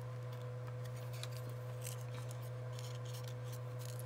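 Steady low hum with a faint higher steady tone, and a few faint soft ticks and rustles of paper being pinched around a wooden stick.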